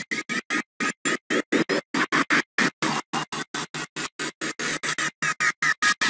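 Stuttering video playback audio: a music-like soundtrack chopped into short fragments about six times a second, with silent gaps between. The stutter comes from the laptop also running screen-recording software.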